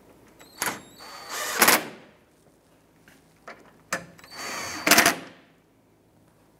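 A cordless impact driver with a socket tightens down two bolts. Each run is a short whir that breaks into rapid hammering as the bolt seats: the first about a second in, the second near the end.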